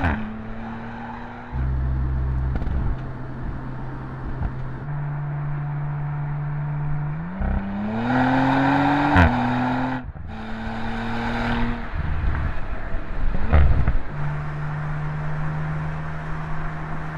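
Audi RS 4 Avant's twin-turbo V6 engine running on the move, its steady note jumping abruptly in pitch several times, with one rising rev under acceleration about halfway through.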